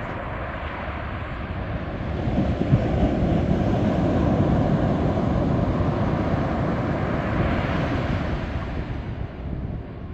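Surf breaking and washing up the beach, the rush swelling about two seconds in and easing off near the end, with wind on the microphone.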